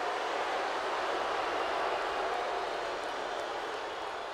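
Large arena crowd making steady crowd noise, a continuous wash of many voices with no single voice standing out, easing slightly toward the end.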